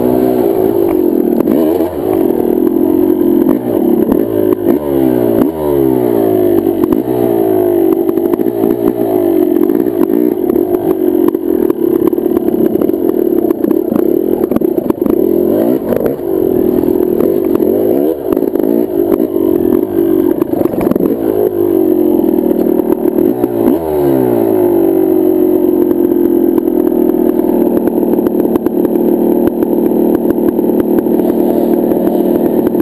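Single-cylinder two-stroke engine of a 2005 Yamaha YZ250 dirt bike, revving up and dropping off again and again as the rider works the throttle, with clattering and knocks from the bike over rough trail. Near the end the engine settles to a steady note.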